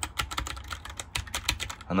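Typing on a tenkeyless Filco mechanical keyboard: a fast, uneven run of sharp key clicks, about ten a second.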